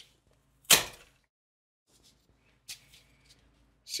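One sharp snap about three-quarters of a second in: a piece of a Korg Nu:Tekt NTS-2 oscilloscope kit broken off its break-away frame by hand. A few faint clicks of handled parts follow near the three-second mark.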